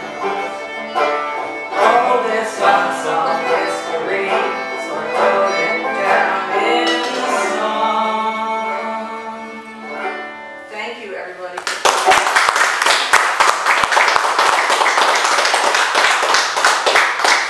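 Banjo and fiddle playing the close of a folk song, the music winding down and ending about ten to eleven seconds in. Then audience clapping.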